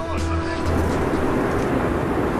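Steady rush and low hum of cabin noise inside an Airbus A380 in flight, with faint voices in the background; music trails off in the first half-second.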